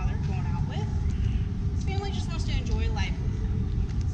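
A person talking over a steady low rumble.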